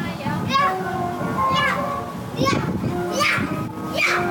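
Children's high voices calling out about four times over steady carousel music with held notes.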